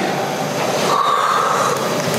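A man's loud, drawn-out, breathy yawn, acted for a dramatic reading, with a short held high note about a second in.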